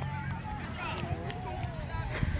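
Faint, distant voices of players and spectators calling across a soccer field, no words clear, over a steady low rumble.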